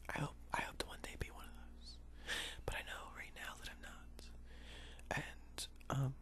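A person whispering softly, with a few small clicks in between.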